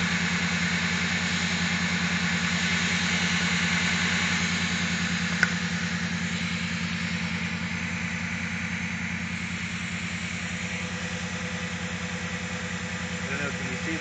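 Chrysler 2.7-litre DOHC V6 idling roughly with a steady, rapid pulsing beat, and one sharp click about five seconds in. The owner takes the rough, mucky idle for a major vacuum leak from intake bolts left loose or missing after disassembly, and says the engine is starting to flood.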